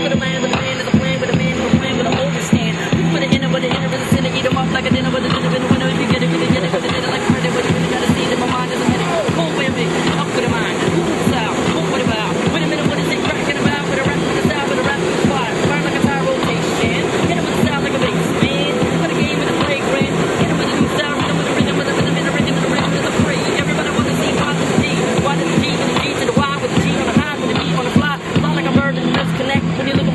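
Freestyle rapping over a hip-hop beat: a man's voice rapping without a break above a steady bass line and drum beat.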